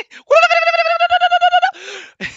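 A person's high-pitched, drawn-out vocal cry, one long held note with a slight wobble lasting over a second, followed near the end by a short breathy sound.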